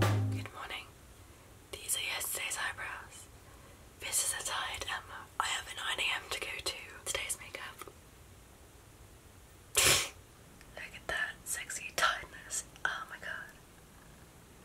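A woman whispering in short phrases, with one brief loud thump about ten seconds in. Background music cuts off just at the start.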